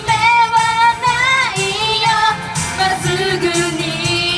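Live J-pop idol song: girls' voices singing into microphones over a loud, steady-beat backing track through PA speakers.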